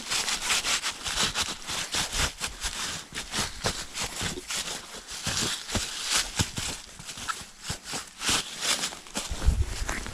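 Rubber boots scuffing and shuffling through dry fallen leaves and dirt: a dense, uneven run of crackling rustles with no pauses.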